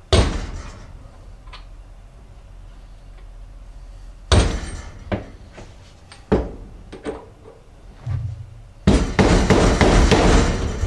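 Soft-faced mallet striking a steel punch to drive the lower bearing shaft out of a quad's rear wheel carrier. Single knocks about a second apart, then a quick run of rapid blows near the end.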